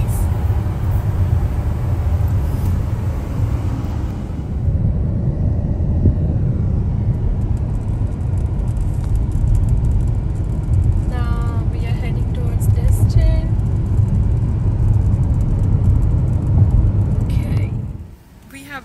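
Road noise inside a moving car's cabin: a steady low rumble of tyres and engine, with faint voices briefly a little past the middle.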